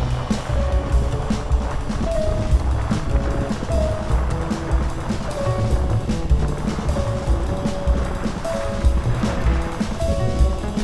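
Background music with a deep pulsing bass beat and held melodic notes.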